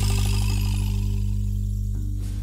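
A live caporales band's final chord held and slowly fading: steady low notes with a high wash dying away after the closing hits.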